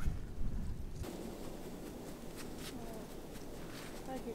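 Footsteps in snow: a series of short crunching steps from about a second in. Before that, a low wind rumble on the microphone.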